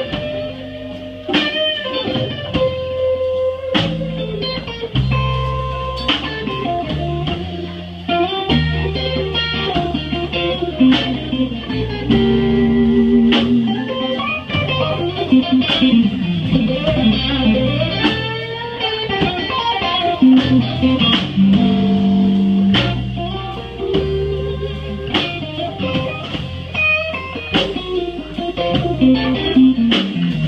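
Live band playing a slow blues instrumental: electric guitar lead over bass guitar, drums and congas.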